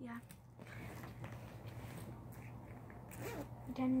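Faint handling of a fabric purse, with a zipper being pulled on one of its pockets about three seconds in.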